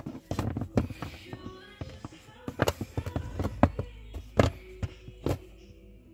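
Irregular sharp clicks, taps and knocks of hands working the throttle pedal assembly and its wiring plug under the dash, over faint music.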